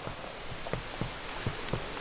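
Steady background hiss with several faint, soft clicks about every half second as hands handle an aluminium soda can.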